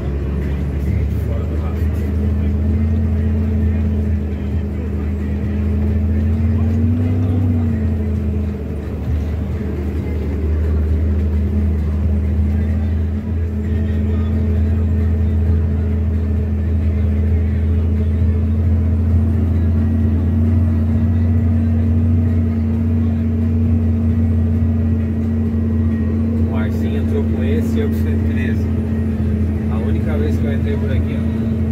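Scania truck's diesel engine running steadily at cruise, heard from inside the cab on a rough dirt road, with a brief rise and fall in pitch about seven seconds in and a few rattles near the end.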